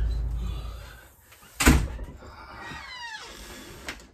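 A house front door being opened and pushed shut: one sharp bang about a second and a half in, a falling squeak a second later, and a small click near the end as it closes. A deep rumble dies away during the first second.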